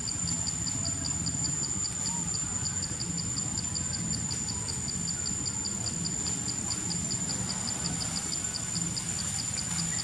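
Insects calling: one keeps up a continuous high-pitched trill while another chirps steadily about five times a second, over a low background rumble.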